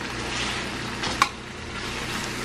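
Chicken breast strips sizzling in olive oil in a stainless steel frying pan, with one light click about a second in.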